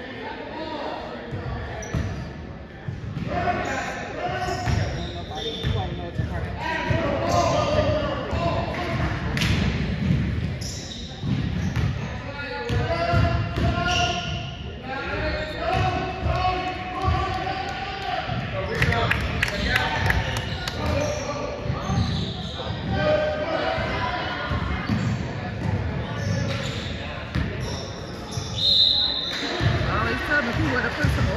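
A basketball bouncing on a hardwood gym floor, with voices echoing in the large gym.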